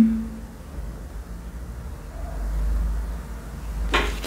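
A low background rumble that swells about two seconds in and eases off near the end.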